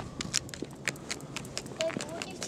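Footsteps on an asphalt road: an irregular series of sharp, gritty clicks and scuffs, a few steps a second.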